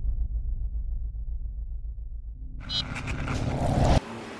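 Logo-intro sound effect: a deep, low rumble that slowly fades, then a rising swell from about two and a half seconds in that grows louder and stops abruptly at the end.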